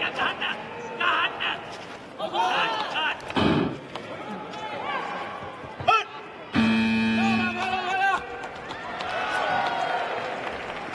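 Voices in the hall, with a dull thud of an impact about three and a half seconds in. About six and a half seconds in, a loud electronic buzzer sounds steadily for about a second and a half as the match clock runs out, signalling the end of the bout.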